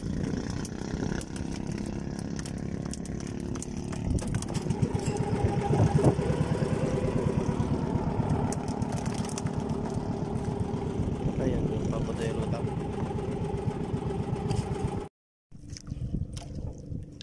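Small boat engine of an outrigger fishing boat running steadily, growing louder over the first few seconds. It cuts out briefly near the end.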